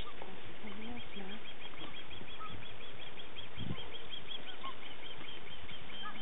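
A llama humming to a newborn cria: a low, wavering hum that rises and falls, heard during the first second and a half. A regular high chirping of about five a second runs underneath throughout.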